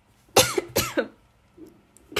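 A woman coughing twice in quick succession, close to the microphone.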